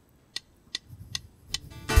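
A four-beat count-in of sharp, evenly spaced clicks, about two and a half a second, then the worship band comes in near the end with strummed acoustic guitar.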